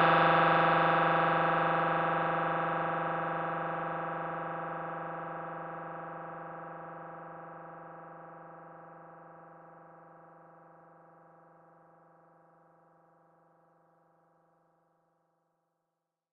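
The last held synthesizer chord of a funk track, a steady sustained tone left ringing after the beat stops and fading out evenly over about twelve seconds.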